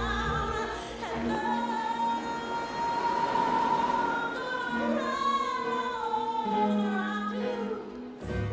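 Soundtrack song: a singer holds one long high note without words, then moves through a sliding run of notes over the backing music.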